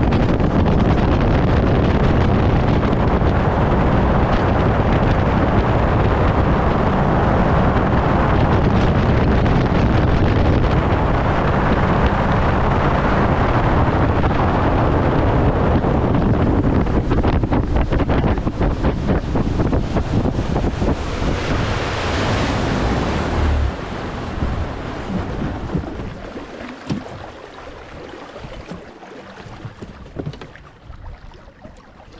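Bass boat running fast across a lake: a loud, steady rush of wind buffeting the microphone, with water and outboard motor noise underneath. About 24 seconds in, the noise drops away and keeps fading as the boat slows down.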